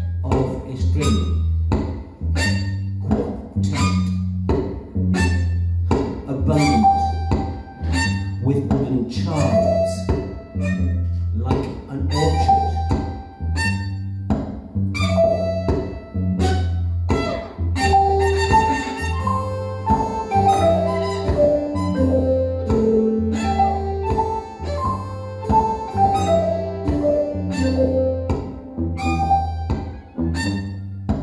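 Live avant-garde garage punk band music with electric guitar and electronics: a heavy low pulse with a regular beat of sharp hits about once a second, joined about halfway through by a melodic line of notes stepping up and down.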